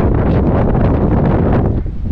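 Strong wind blowing across the microphone: a loud, heavy rushing noise that is strongest in the low end, starting abruptly and dipping briefly just before the end.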